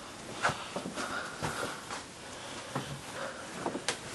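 Footsteps and handling noise as someone moves around a car with a phone, with a few irregular sharp clicks and a brief low hum near the end.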